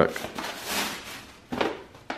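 Tissue paper rustling as a wrapped gift is unwrapped, with a knock about one and a half seconds in as the small cardboard box inside is handled.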